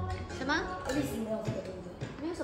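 Children talking and calling out around a dinner table, with music playing in the background.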